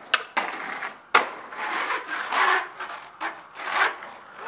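Skateboard popping a trick with a sharp snap, then landing with a louder clack about a second in. The wheels then roll over brick pavers with a rough, swelling rumble.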